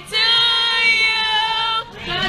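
Female voices singing a long held note, steady in pitch, that begins just after a brief break and lasts most of two seconds.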